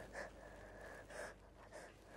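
Quiet crying: a few short, gasping, sniffling breaths.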